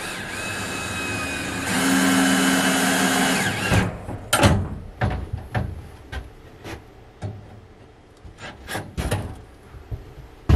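Power drill running steadily in two bursts, the second louder, driving screws to mount a breaker box on the wall, followed by a string of irregular knocks and clicks as the box and tools are handled.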